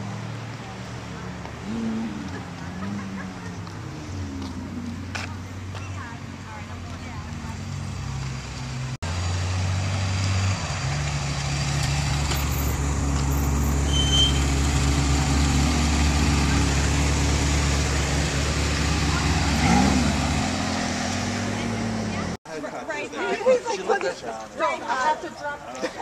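A car engine running at idle, a steady low hum, changing pitch during the first few seconds. It breaks off abruptly twice, at about 9 and 22 seconds.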